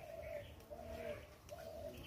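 A dove cooing faintly: three short, low, steady coos about two thirds of a second apart.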